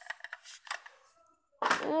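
Hard plastic toy train carriages and their plastic packing tray clicking and knocking as they are handled and set down, a quick run of light taps in the first second. Near the end a child says a long "ooh".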